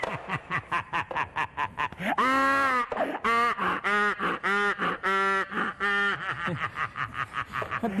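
A man laughing loudly and theatrically: a run of quick cackling, then one long held "haaa" and five loud drawn-out "ha"s about half a second apart, then quick cackling again.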